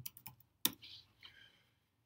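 Keystrokes on a computer keyboard: a quick run of light clicks, with one louder key press about two-thirds of a second in.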